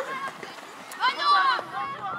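Shouting voices on an outdoor football pitch, with one loud drawn-out call about a second in.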